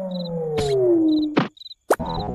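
Cartoon falling-whistle sound effect: one smooth tone sliding steadily down in pitch for about a second and a half, then cutting off as the flower lands. Crickets chirp in the background at an even pace.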